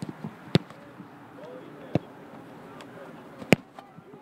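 Footballs being kicked, each a sharp single thump: one about half a second in, another near two seconds, and the loudest about three and a half seconds in.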